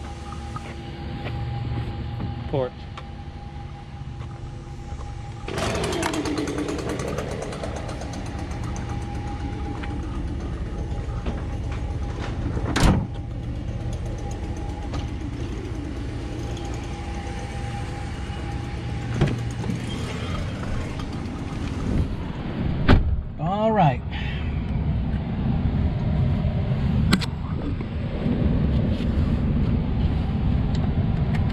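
An engine runs steadily throughout. A single sharp knock comes about halfway through, and a brief squeak with a couple of thuds, like a vehicle door, comes later on.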